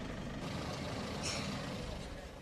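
4x4 off-road vehicles idling outdoors: a steady low rumble of engine noise, with a brief hiss a little past one second in.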